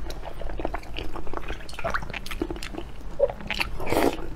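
A person eating noodles in broth, slurping and chewing with irregular short wet mouth sounds.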